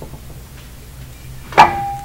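A brake rotor knocks once against a workbench about one and a half seconds in and rings with a clear, lingering metallic tone. Before the knock there is only faint shop room tone.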